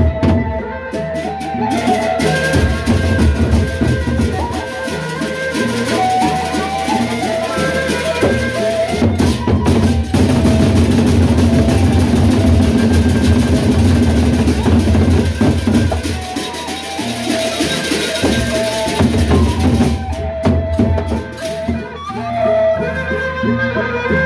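A Sasak gendang beleq ensemble playing: large double-headed drums beaten with sticks in fast interlocking rhythms over a wind-instrument melody. About ten seconds in, the drumming turns loud and dense with a bright metallic wash and the melody drops out; the melody comes back near the end.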